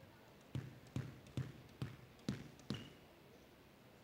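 A squash ball bounced on the wooden court floor six times at a steady pace, a little over two bounces a second, as the server readies to serve.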